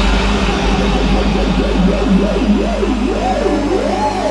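EDM mix playing loud on a nightclub sound system: a synth tone swoops up and down in pitch, quickening about halfway through, over a steady deep bass drone.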